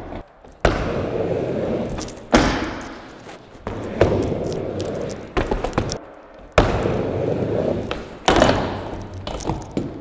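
Skateboard wheels rolling on a mini ramp, with sharp smacks of the board dropping in and striking the ramp. There are two rides, with a short pause between them a little past halfway.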